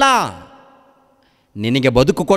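Only speech: a man preaching. A drawn-out word falls away, then after a pause of about a second he resumes speaking.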